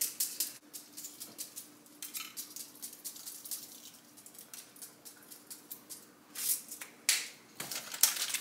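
Halloween sprinkles rattling in a small shaker jar as they are shaken out over whipped cream, in a string of light, irregular ticks. Two louder, brief bursts come near the end.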